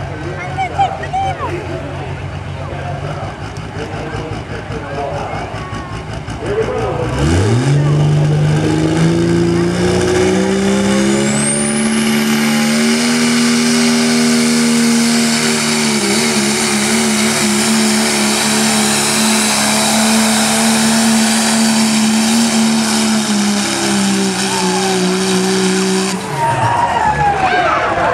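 Cummins turbo-diesel Dodge Ram pickup making a truck-pull run against a weight-transfer sled: after about seven seconds of low running, the engine revs up sharply and holds a loud, steady high-rpm note for nearly twenty seconds, with a high whistle rising briefly about eleven seconds in. Near the end the engine drops off as the pull finishes.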